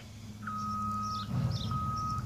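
Vehicle reversing alarm beeping, a single steady high tone repeating about once a second, two beeps starting about half a second in, over a low rumble.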